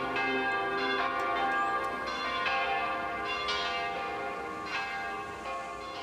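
St-Grégoire church bells ringing: several bells struck one after another, about once a second, their long tones ringing on and overlapping and slowly fading toward the end.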